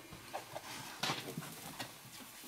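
A Eurohound puppy and a Nova Scotia Duck Tolling Retriever play-wrestling: scuffling, with a series of short knocks and clicks of paws and claws, the loudest about a second in.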